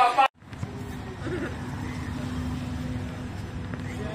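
Steady hum with one low steady tone from a Muni heritage electric trolleybus standing in the street, under faint street noise.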